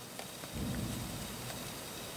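Handling noise of a small LEGO brick model being turned around by hand on a tabletop: a couple of faint plastic clicks, then a low rumbling scrape from about half a second in, over a steady background hiss.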